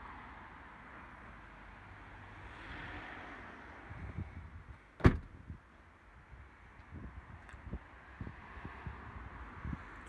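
The Audi A1 hatchback's tailgate being shut: one sharp slam about five seconds in, with a few faint low thuds after it.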